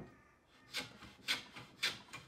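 A flat hand tool is drawn over the edge of a hardwood workpiece clamped in a bench vise, making four rasping strokes about two a second, after a short knock at the start.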